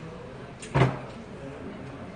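A glass soju bottle set down on the table, one short knock a little under a second in.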